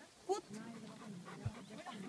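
A Bernese mountain dog gives one short, rising whine about a third of a second in, with a dull low thump about a second later.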